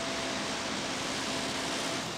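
Steady hum and hiss of factory machinery, even throughout, with a faint high steady tone that stops under a second in.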